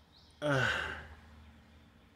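A person's sigh: a breathy voiced exhale that falls in pitch, about half a second long, starting about half a second in.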